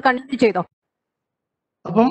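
Speech: a voice speaks for about half a second, then the audio drops to complete silence for about a second before speech starts again near the end.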